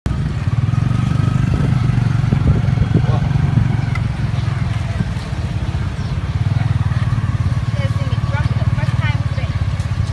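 Motorcycle engine pulling a Cambodian tuk-tuk carriage, running steadily, heard from the carriage just behind it, with brief voices near the end.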